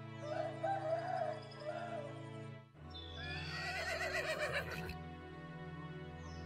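Soundbeam 6 music played live: a held synthesized chord that changes to a new chord about halfway through, with two wavering animal-call samples triggered over it, the second louder and falling in pitch.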